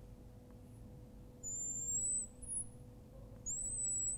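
A marker squeaking across a glass lightboard in two strokes, about a second and a half in and again near the end, each a thin high squeal rising slightly in pitch.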